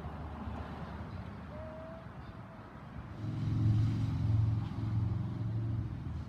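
A low engine hum comes up about three seconds in and runs on steadily over faint outdoor background.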